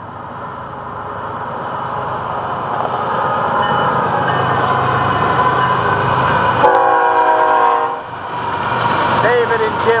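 Florida East Coast Railway GE ES44C4 diesel locomotives approaching and passing close by, their engines and wheels growing steadily louder. A multi-chime air horn sounds one short blast of just over a second, about seven seconds in.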